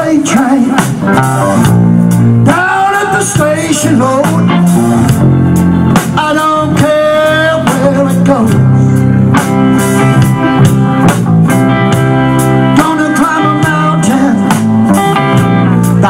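Live band playing a blues-tinged southern-rock song through a PA: electric guitar lines bending over bass and a steady beat, loud and continuous.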